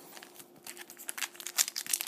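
Foil wrapper of a football trading-card pack crinkling as it is handled and torn open. The crackling grows louder and denser from about half a second in.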